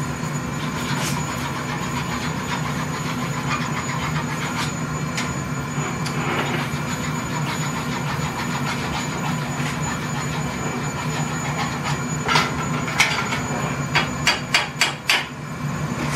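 Steady roar and hum of the glass shop's furnace running throughout, under a steel blowpipe being rolled along the glassblower's bench arms. Near the end comes a quick run of sharp metal clinks as hand tools are handled in a metal bucket.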